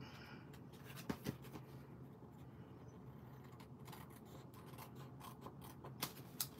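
Small scissors snipping a sliver off the edge of card stock, faintly: a couple of cuts about a second in, then a few fainter ones.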